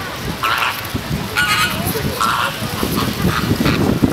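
A flock of flamingos honking, short goose-like calls coming about once a second.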